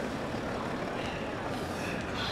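Steady busy-street ambience: a low, even rumble of city traffic under the indistinct voices of passers-by.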